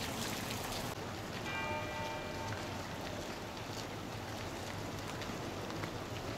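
Steady splashing of garden fountain water. About a second and a half in, a brief ringing tone with several overtones sounds for about a second.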